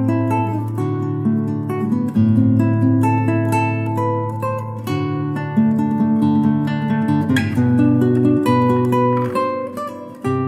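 Background music: acoustic guitar, plucked notes over held bass notes that change every couple of seconds.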